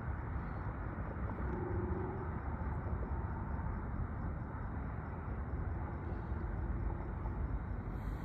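Steady low rumble of diesel locomotives approaching from a distance, even and unbroken.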